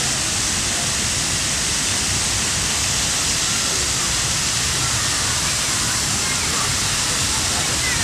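Steady splashing of a plaza fountain's water jets, with faint voices in the background.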